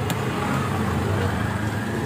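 Steady low rumble of street traffic, with one sharp knock just after the start.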